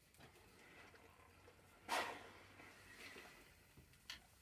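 Steam iron pressing the seams of a cotton mask flat: soft sliding and rustling of the iron and fabric, with one short, loud burst of noise about two seconds in.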